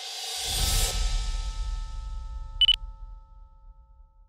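Logo sting sound effect: a rising whoosh swells into a deep boom under a second in, then a bright ding a little past the middle whose tones ring on and fade out.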